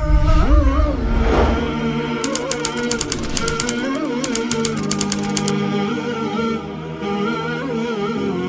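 Closing theme music of wordless humming vocals over a steady low tone. From about two seconds in, a quick run of typewriter-like clicks sounds for about three seconds as a sound effect.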